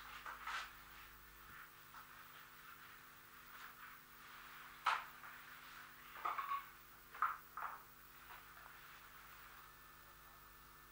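A few scattered sharp knocks or cracks, the loudest about five seconds in, over the steady hum and hiss of an old field recording.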